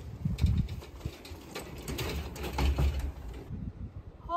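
Loaded steel-mesh utility wagon being pulled along: wheels rumbling and the load rattling and clattering unevenly. It changes abruptly about three and a half seconds in.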